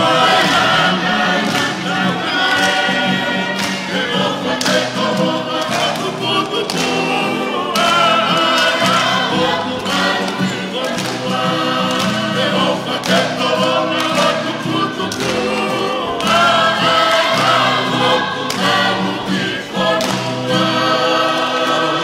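A group of voices singing together in harmony, Tongan choral singing, in phrases of a few seconds each.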